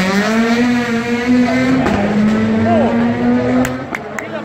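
Ford Fiesta rally car engine pulling hard at high revs, with a gear change about two seconds in and the revs dropping off near the end as the car lifts for a corner.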